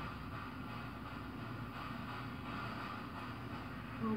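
Ghost-hunting spirit box scanning through radio frequencies: steady static chopped into rapid short fragments.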